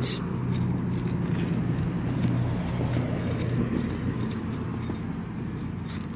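A steady low engine hum runs throughout, with faint scrapes and clicks from a hand digger working in soil and grass roots.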